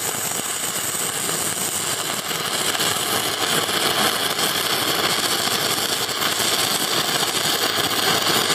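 Shielded metal arc (stick) welding with a 6013 rod in the flat position: a steady arc crackle and hiss, growing a little louder a couple of seconds in.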